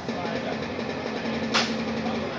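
A single sharp crack of a strike about one and a half seconds in, over a steady low hum and room noise.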